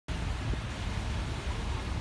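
Steady wind noise rumbling on the microphone, with a fainter even hiss above it.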